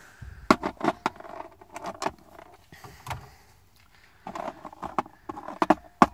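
Light metallic clicks and rattles as a removed truck door lock cylinder and its metal retaining clip are handled and set down in a plastic parts tray. The clicks are scattered, go quiet for a moment, then come as a cluster near the end.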